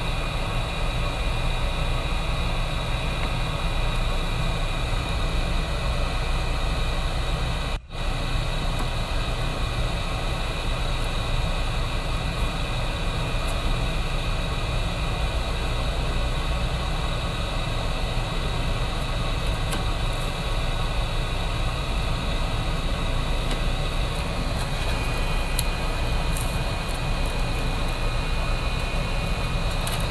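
Steady fan-like whir and hiss from workbench equipment, with one brief dropout about eight seconds in.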